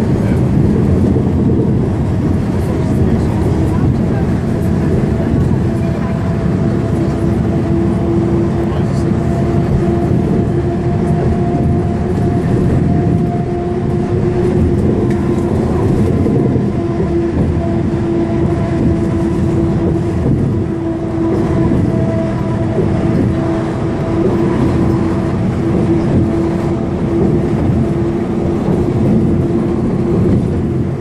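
Inside a moving Van Hool articulated city bus: steady engine and road drone with a held whine over it, unbroken as the bus cruises.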